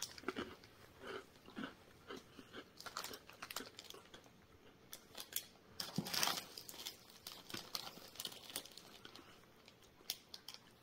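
A person chewing a small iced biscuit: faint, irregular short clicks of chewing, with a louder stretch about six seconds in.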